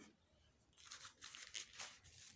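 Near silence broken by a few faint, short rustling sounds in the second half.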